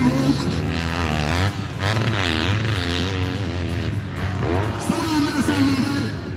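Motocross dirt bike engine revving up and down in quick repeated swells as the rider works the throttle.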